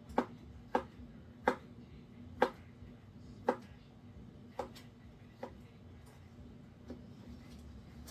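Kitchen knife chopping soft cooked beets on a cutting board: sharp taps of the blade striking the board, irregular and roughly one a second, growing fainter after about four seconds.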